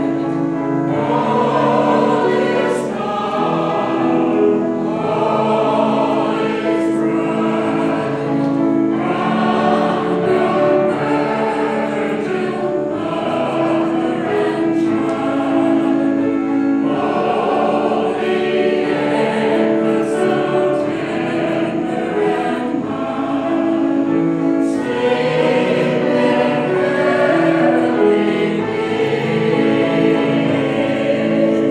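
Mixed choir of older men and women singing an arrangement of Christmas carols in held, sustained chords.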